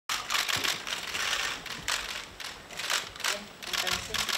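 Many press camera shutters clicking rapidly and overlapping, swelling into louder bursts about once a second as the photographers fire at a photo call.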